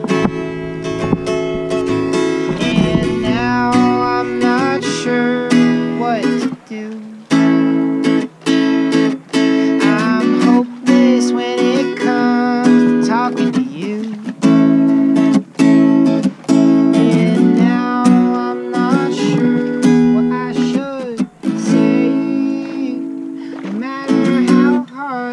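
Acoustic guitar strummed in steady chords, with regular strums through the whole stretch.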